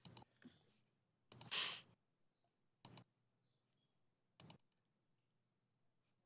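Near silence with a few faint clicks, some coming in pairs, and a short soft hiss about one and a half seconds in.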